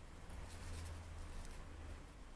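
Quiet room tone with a faint steady low hum and a few soft clicks near the start.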